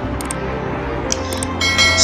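Background music, with a bright bell-like ringing tone coming in near the end.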